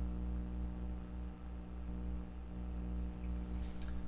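Steady low electrical hum over faint room tone, with a faint brief hiss near the end.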